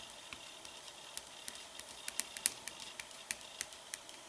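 Posca paint marker's tip tapping on the painted paper to make small dots: about a dozen faint, light ticks at an uneven pace, roughly three a second.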